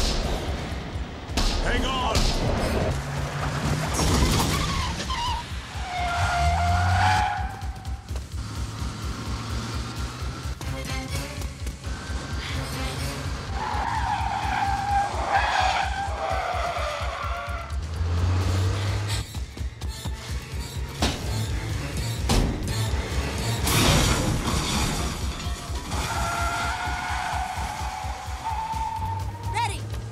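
Film soundtrack of a car chase: a police car's engine running hard and its tyres squealing in three long skids, a few seconds apart, over a pulsing music score.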